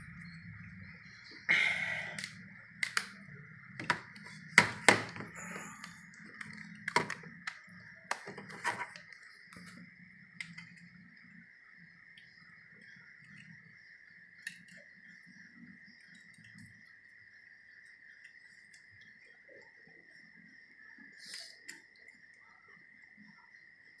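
Scattered metal clicks and knocks as a timing belt is worked onto the sprockets and spring-loaded tensioner pulley of a Suzuki Katana/Jimny engine, most of them in the first nine seconds and fewer after. A faint steady high tone runs underneath.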